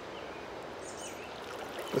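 Steady wash of shallow flowing river water.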